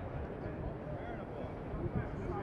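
Indistinct, distant voices of several people talking across an open field over a steady low rumble.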